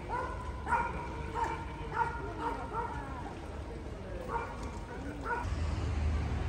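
An animal's short, pitched yelping calls: a quick run of them in the first three seconds, then two more near the end.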